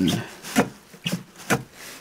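Three sharp clicks about half a second apart over a soft rubbing, from hands or gear being handled around the snowmobile's engine compartment.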